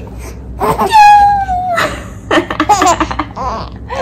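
A four-month-old baby laughing and squealing while being lifted up in the air: one long high squeal about a second in, then shorter bursts of laughter.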